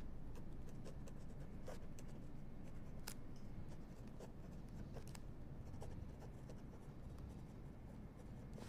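Soft rustling and scattered light ticks of paper case files being handled, over a low steady hum.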